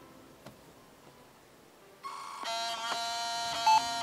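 IBM ThinkPad A30 laptop's internal beeper sounding error beeps on power-up: a short higher tone about two seconds in, then a long steady beep with a brief higher blip near the end. The beeps are the sign that the machine still rejects the RAM fitted to it, or that the laptop is dead.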